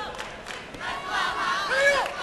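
Several voices shouting over crowd noise at a taekwondo bout, getting louder toward the end with one yell rising in pitch. A few sharp smacks come in the first half second.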